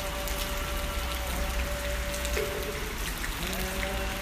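Steady rain falling, an even hiss with scattered sharp drop ticks. Faint sustained tones sit underneath and shift pitch about three and a half seconds in.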